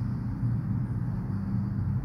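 Steady low background hum with a faint even noise underneath.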